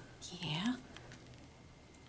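A brief, soft murmured voice near the start, then quiet room tone.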